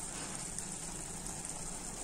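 Potato curry simmering in a pan on low heat, giving a steady faint sizzle.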